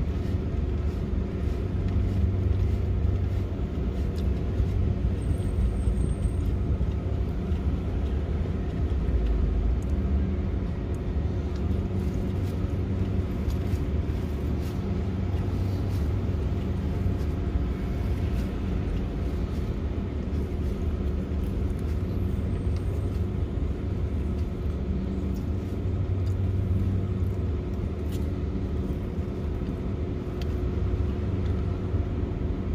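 A parked pickup truck's engine idling, heard inside the cab: a steady low rumble with a constant hum.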